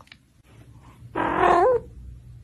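A kitten meowing once, starting about a second in: a call of about half a second that turns up in pitch at the end.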